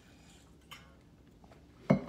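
Quiet room tone with a single faint click less than a second in, then a sudden loud thump just before the end.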